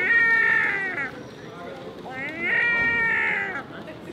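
European herring gull giving two drawn-out, cat-like mewing cries, the first right at the start and the second about two seconds in.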